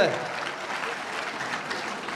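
Audience applauding: steady hand clapping from a crowd, with a man's voice trailing off just as it begins.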